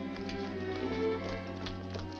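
Orchestral film score with held, sustained notes, over faint footsteps tapping on wet pavement.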